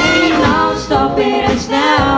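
Two female vocalists singing live with a pop band of keyboards, bass guitar and drums, the voices out front.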